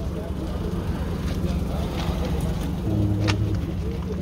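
A vehicle engine idling steadily, a low even rumble, with faint voices of people talking in the background.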